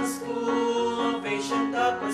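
Choir singing a slow school hymn in harmony, with long held notes.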